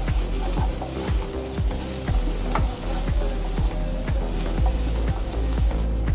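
Chopped onions, green chillies and spice powders frying in coconut oil in a nonstick pan, sizzling, with repeated scraping strokes as a spatula stirs them, roughly two a second.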